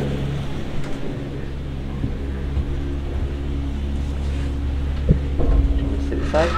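Gondola cable car moving through its station, with the station machinery giving a steady low hum and a few knocks from the cabin and its fittings.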